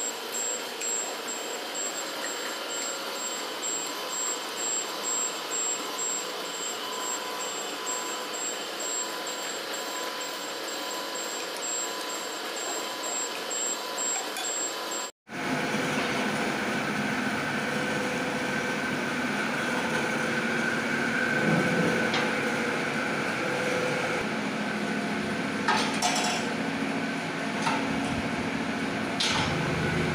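Steady factory machinery noise in an AAC block plant's cutting section: a constant hum with a thin high whine and a faint pulse about once a second. About halfway through, a cut brings a louder, fuller machine noise with a few knocks.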